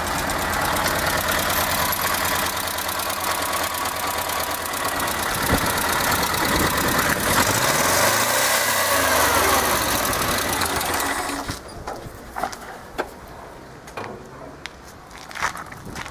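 The air-cooled V4 engine of a 1975 LuAZ off-roader running, its pitch rising and falling once near the middle, then cutting out about two-thirds of the way through, leaving only a few light clicks.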